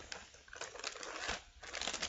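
Plastic packaging crinkling and rustling in uneven bursts as products are handled.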